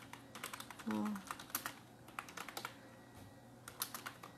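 Typing on a computer keyboard: a run of quick, irregular key clicks that pauses for about a second near the end, then picks up again.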